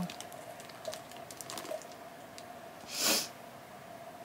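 A short, sharp sniff about three seconds in, amid faint clicks and taps of small objects being handled.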